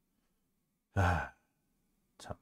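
A man's single short, voiced sigh about a second in, an exasperated exhale.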